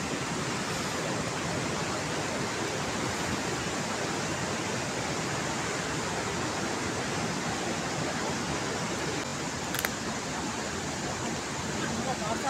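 Steady, even rushing noise outdoors, with one short click about ten seconds in.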